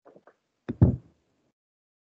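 Two quick knocks in close succession about three-quarters of a second in, the second louder and heavier, heard through a video call's audio with dead silence around them.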